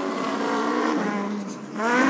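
A person imitating a Trabant's two-stroke engine with their voice: a steady engine-like drone that rises in pitch near the end, like a rev.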